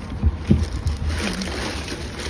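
Handling noise from rummaging in a bin of discarded produce: a low rumble of clothing rubbing against the microphone, a few soft knocks, then a rustle from about a second in.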